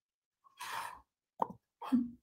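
A quiet pause in a room: a soft breath, then a single short mouth click about a second and a half in, and the start of a voice right at the end.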